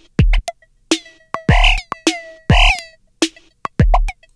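Electronic drum loop run through Moog Moogerfooger FreqBox and MuRF plugins: four deep kicks, sharp clicky hat-like hits between them, and two longer metallic synth blips with a ringing pitch.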